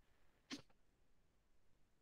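Near silence, broken about half a second in by a single short sneeze from a person.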